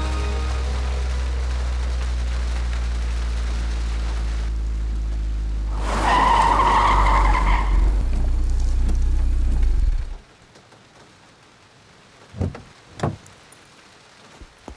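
Car engine running with a steady low drone, and tyres squealing briefly about six seconds in. The sound cuts off abruptly near ten seconds, followed by a few soft thuds.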